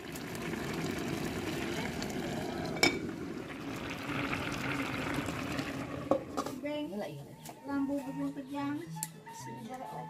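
Water swishing as rice is stirred and rinsed by hand in a metal pot, with one sharp clink against the pot about three seconds in. Background music comes in over it after about six seconds.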